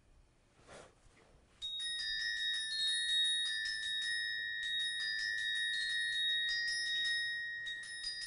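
Orchestra bells (glockenspiel) playing the bell part of a concert band piece on its own. A quick pattern of struck, ringing high notes starts about two seconds in, with the notes overlapping and one note held underneath.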